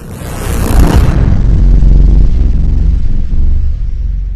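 Logo intro sound effect: a loud, deep rumble that swells up over the first second and then holds steady, with a high hiss that falls away about a second in.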